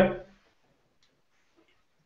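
A man's voice ending the word "but" at the very start, then near silence during a pause before he answers.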